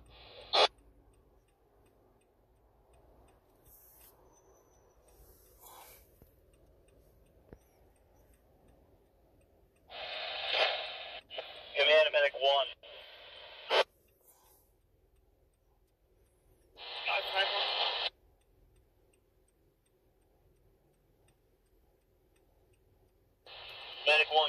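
Fire-department two-way radio traffic: brief, garbled transmissions with squelch clicks, a cluster about ten seconds in and one more short burst a few seconds later, with faint hiss in between.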